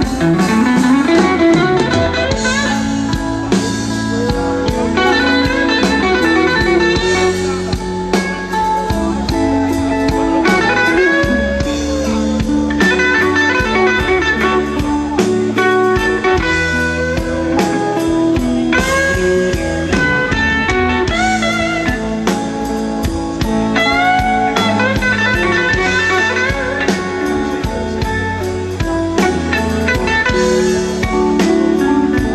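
Live electric blues band playing an instrumental break in a slow blues: a semi-hollow electric guitar plays a lead with bent notes over bass and drums.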